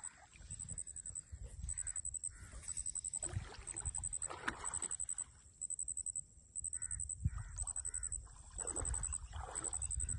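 Bird calls, heard over a low rumble of wind and water sloshing around wading legs. A thin, high-pitched chirp repeats about once a second throughout.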